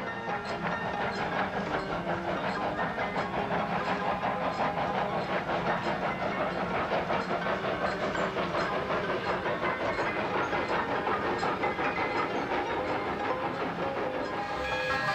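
Steam locomotive running, with steady rhythmic chuffing and hissing steam.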